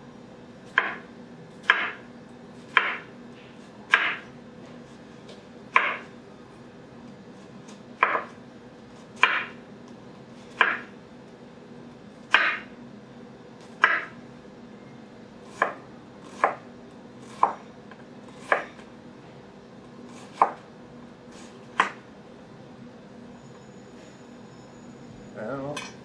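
Imarku 8-inch chef's knife dicing an onion on a cutting board: about sixteen separate cuts, each a short sharp stroke as the blade goes through and meets the board, spaced a second or more apart. The blade needs a little force to get through the onion.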